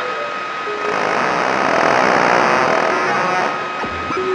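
A whooshing swell of noise that rises to a peak about two seconds in and fades again, like something rushing past, under a steady high held tone, part of an experimental electronic sound collage.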